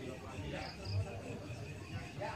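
Crickets chirping in a steady high trill, with faint voices murmuring underneath.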